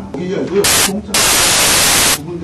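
Loud bursts of static hiss that cut abruptly in and out over a man talking into a microphone: a short burst just after half a second, then a longer one from about a second in. The hard on-off blocks of noise are the sign of a fault in the audio, not of anything in the room.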